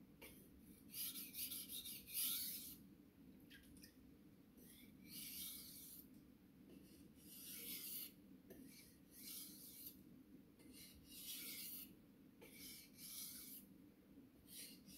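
Steel knife edge stroked across an Imanishi Bester #1000 water stone: a faint scraping hiss with each pass, about ten strokes of half a second to a second each. Light strokes to remove the burr after sharpening.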